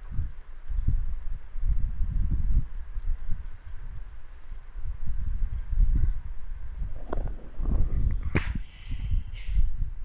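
Low, uneven rumbling with soft knocks, and one sharp click about eight seconds in.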